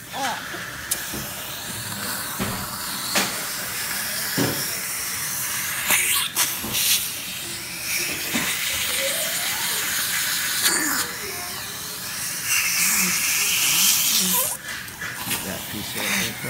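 Dental air-water syringe spraying into the mouth while a suction tube draws the water out, a steady hiss that grows louder for a couple of seconds near the end. This is the rinse that washes loosened band cement out after a palatal expander comes off.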